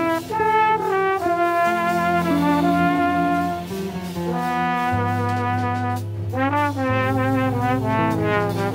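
Trombone playing a slow melody of long held notes over an upright bass in a small jazz group. Several notes bend in pitch about six seconds in.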